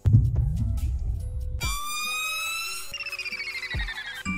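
Synthesized drill drum-kit FX samples auditioned in turn: a deep low boom, then a siren-like synth tone that sweeps sharply upward and holds. About three seconds in it gives way to a rapidly pulsing tone that slowly falls in pitch.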